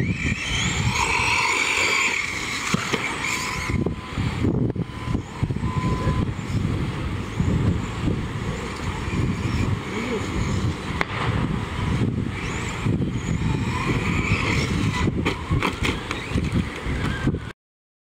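RC short course truck's motor whining, rising and falling in pitch as the truck speeds up and slows on the dirt track, over a heavy wind rumble on the microphone. The sound cuts off abruptly near the end.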